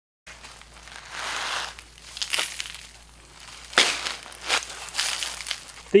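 Sand pouring from a plastic bucket onto cardboard and roller chains, a gritty hiss with a few sharp crunchy knocks.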